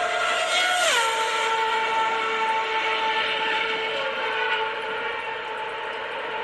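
Racing car sound effect: a high-revving engine note that drops sharply in pitch about a second in as the car passes, then holds at the lower pitch and slowly fades.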